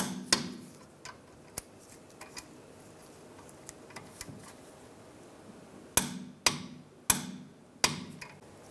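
Click-type torque wrench clicking as the rear brake caliper bracket bolts reach their 48 foot-pound setting. One sharp metallic click comes just after the start and a few faint ticks follow. Near the end come four clicks about half a second apart.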